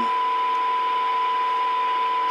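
A CB radio receiver's audio carrying a steady 1 kHz test tone from a signal generator, with a fainter lower tone and an even hiss beneath it: the receiver's sensitivity being measured by its 12 dB SINAD point.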